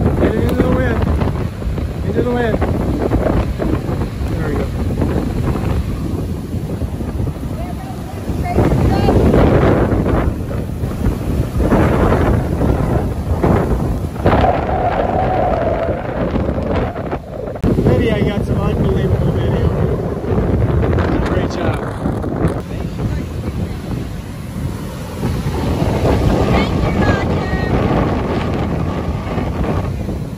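Strong, gusting storm wind from a passing hurricane buffeting the microphone, over the rush of heavy breaking surf.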